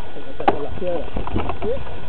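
Steady rumble and rattle of a mountain bike riding a rough dirt trail, with muffled voices and a sharp knock about half a second in.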